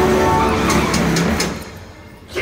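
Dark-ride onboard soundtrack: music carries into a rushing noise with a few sharp clicks, then everything fades down near the end as the ride moves between scenes.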